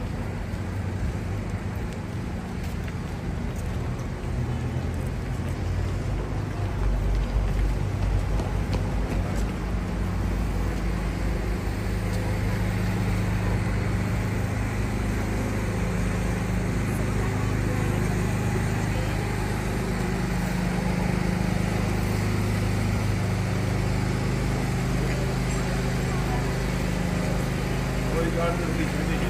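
Outdoor urban ambience: passers-by talking in the background over a steady low motor hum, which grows louder about ten seconds in.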